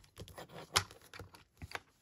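A run of light clicks and taps as flat bar magnets are set down onto the magnetic base of a Stamparatus stamping platform to hold the cardstock in place. There are about nine of them, the sharpest a little under a second in.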